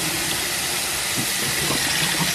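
Kitchen faucet running in a steady stream onto and into a plastic bottle over a stainless steel sink as the bottle is rinsed out: an even rush of water.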